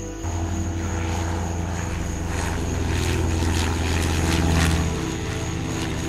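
Propeller plane engine drone that starts abruptly, grows louder as the plane approaches, peaks about four and a half seconds in, then drops away.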